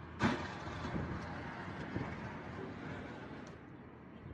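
A car bumping into a parked car: one sharp knock about a quarter second in, over steady outdoor street noise.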